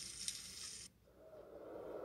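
Bacon-wrapped jalapeno poppers sizzling on a portable grill, a steady hiss with one small click, cut off abruptly about a second in. A steady low rumble follows.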